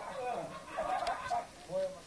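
Men's voices making short wordless vocal sounds, with a couple of sharp clicks about a second in.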